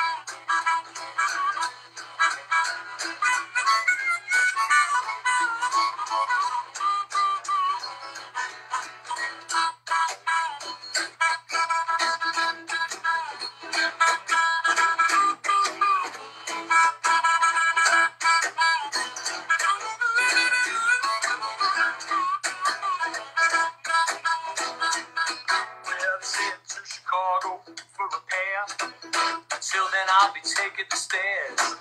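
Harmonica playing an instrumental break, with held and bending notes, over a strummed acoustic guitar.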